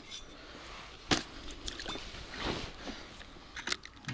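Handling noises as a freshly caught silver bream and the fishing tackle are handled at the water's edge: a sharp click about a second in, a short soft rush of noise about halfway through, and a few light clicks near the end.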